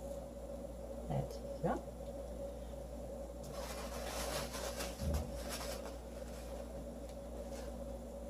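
Quiet kitchen with a steady low hum and faint rustling and light scraping from handling a chocolate-dipped pastry over a bowl, busiest in the middle with a soft thump. Two short, rising vocal sounds come about a second in and again shortly after.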